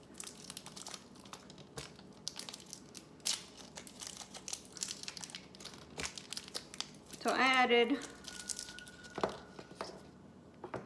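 Plastic wrappers of fun-size Snickers bars crinkling and tearing as they are unwrapped by hand: a long run of small, irregular crackles. A brief voice sound comes about seven seconds in.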